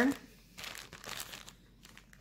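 Clear plastic kit bag crinkling and rustling unevenly as it is handled.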